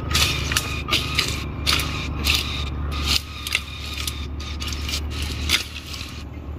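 Dry leaf litter and brush crunching and crackling in irregular sharp strokes, about two a second, over a steady low hum.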